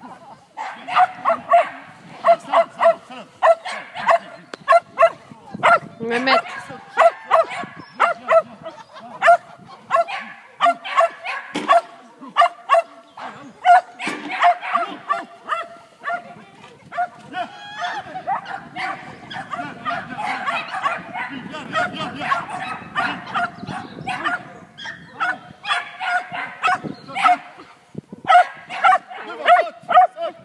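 A dog barking excitedly and almost without pause, about two to three short barks a second, as it runs an agility course.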